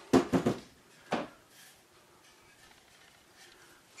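Pieces of wood handled on a countertop: a quick clatter of three or four knocks in the first half second and a single knock about a second in, then quiet room tone.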